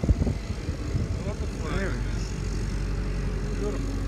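Steady low rumble of outdoor background noise, with brief distant voices about two seconds in.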